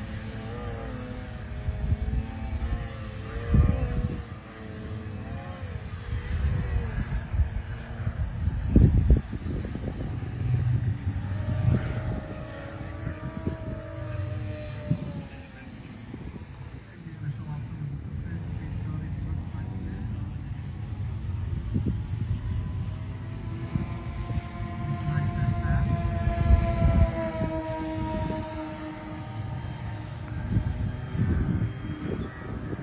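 Electric motors and propellers of a twin-motor radio-controlled Twin Otter model plane whining in flight, the pitch wavering and then falling as the plane passes by, more than once. Irregular wind rumble on the microphone.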